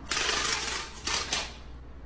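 Slats of window blinds rattling and clattering for about a second and a half.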